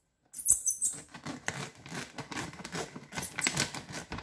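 A plastic pouch of dry cat food being cut open across the top with scissors, the plastic crinkling and crackling irregularly. It starts sharply about a third of a second in.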